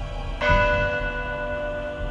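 Intro theme music with a single bell strike about half a second in, its tones ringing on and slowly fading over a low musical bed.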